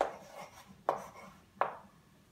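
Chalk writing on a chalkboard: three sharp taps of the chalk against the board, about a second in and again just after, with faint scratching between strokes.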